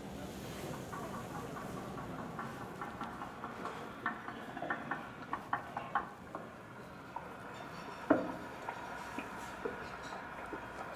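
A run of light, irregular clicks and knocks over a steady room background, with one sharper, louder knock about eight seconds in.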